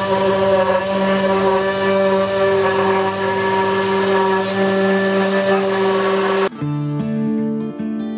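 Anolex 3020 desktop CNC router's spindle running steadily with a whine of several even tones, its bit cutting a pocket into a softwood board. About six and a half seconds in it cuts off abruptly and acoustic guitar music takes over.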